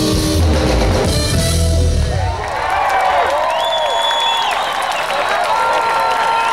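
A live jazz band (alto saxophone, electric bass, drums) plays its final bars, which stop about two seconds in. A crowd follows, cheering, whistling and applauding.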